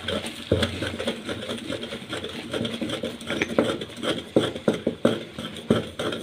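Blocks of gym chalk being crushed and ground with a stick in a glass dish: a dense run of dry, gritty crunches and scrapes, with several louder sharp crunches in the second half.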